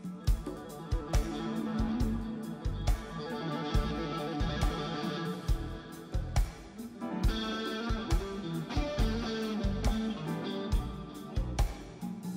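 Rock band playing live: an electric guitar to the fore over drums with a regular kick-drum beat.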